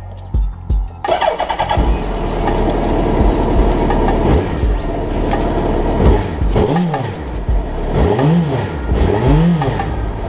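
Suzuki Hayabusa motorcycle engine catching about a second in and running, then revved in three quick blips that rise and fall in pitch near the end.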